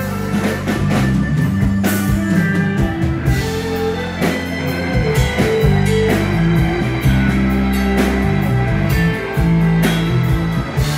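Live rock band playing an instrumental passage with no vocals: electric guitar over a drum kit.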